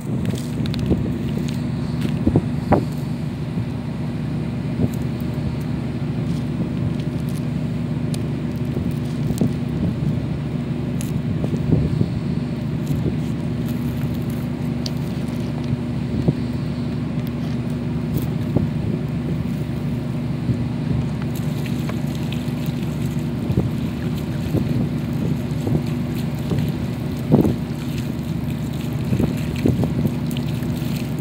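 Steady low rumble of wind buffeting the microphone, with a constant low hum underneath. A few short knocks come through, one about three seconds in and one near the end.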